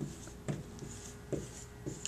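Marker writing on a whiteboard in short separate strokes, about four in two seconds.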